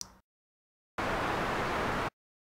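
White noise from FL Studio's Sytrus synthesizer: operator 1 is set as a noise oscillator, made stereo by two-voice unison. It plays as one steady, full-range note that starts about a second in, is held for about a second and cuts off suddenly.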